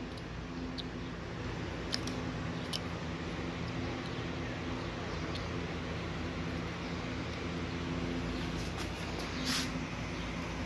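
Yellow XT90-style anti-spark battery connector being pushed together, closing with a short click near the end after a few faint clicks of the plastic plugs being handled. The anti-spark plug mates without an arcing pop. A steady low hum runs underneath.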